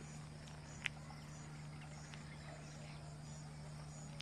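Faint outdoor background with insects chirping, over a steady low hum; one small click about a second in.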